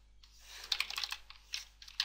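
Computer keyboard being typed on: a few quiet, irregular keystrokes starting about half a second in, as a short word is typed.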